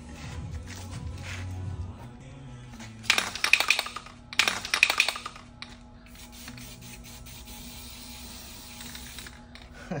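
Aerosol spray can sprayed onto a rust patch on a wheel arch: two loud, rattly bursts about three and four and a half seconds in, then a steady hiss of spraying for about three seconds. Background music plays underneath.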